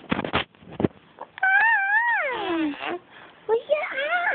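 Three-month-old baby cooing: a long, high vocal sound that wavers and then slides down in pitch, followed near the end by a shorter coo that also falls. A brief rustle of handling noise comes at the very start.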